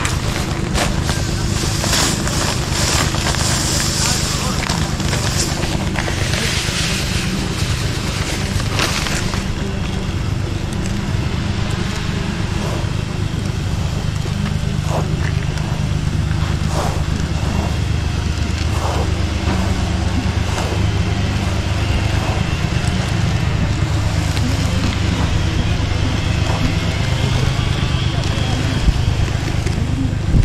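Push broadcast spreader rolling over artificial turf, its spinner scattering granular infill, with a steady low engine drone underneath.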